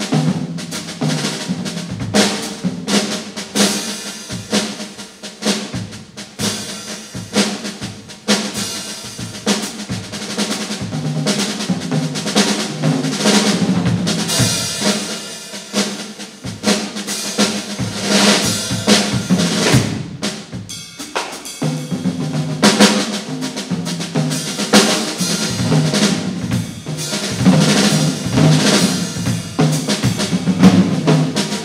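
Live jazz from a trio of drum kit, upright double bass and electric guitar, with the drum kit loudest: busy snare and cymbal work over the bass drum. The playing drops out briefly a little after two-thirds of the way through.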